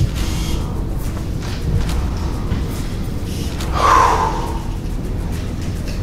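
Background music under a pause: a dramatic underscore with a steady low drone and a brief swell about four seconds in.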